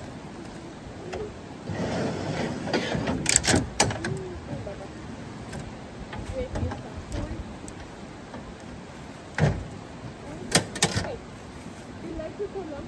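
A slide-out drawer in a truck bed being pulled out on its runners, followed by several sharp knocks and clacks of metal gear being handled and set down, in two clusters: one a few seconds in and one near the end.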